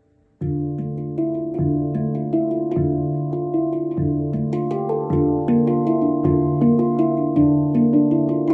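Stainless steel D Kurd 10 handpan played with the hands: after a brief lull, a steady groove begins about half a second in, the low central ding (D3) struck roughly once a second with quicker ringing notes from the surrounding tone fields in between.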